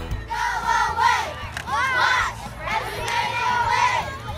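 A group of children shouting and cheering together in high voices, in about three bursts.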